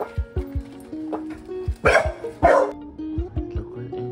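Background music with a steady beat, and a dog barking twice, about half a second apart, two seconds in.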